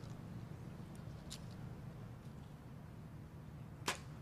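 Faint steady low background hum, then near the end a single sharp click as a compound bow is shot.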